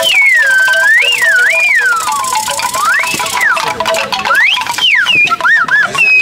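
Bamboo slide whistle blown while its plunger is pushed and pulled, the pitch swooping up and down: a long slide down in the first half, then higher rising swoops, and quick little up-and-down wobbles near the end.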